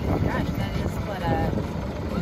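Steady low rumble of a sailboat under way, with wind on the microphone and brief faint voices.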